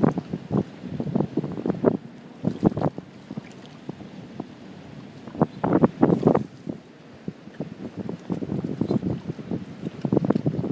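Water splashing and lapping in irregular bursts, heaviest near the start, about two and a half seconds in and around six seconds in, with wind buffeting the microphone.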